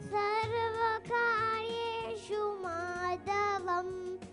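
A young girl singing solo into a microphone, in short phrases of long held notes that slide between pitches, amplified over a PA system.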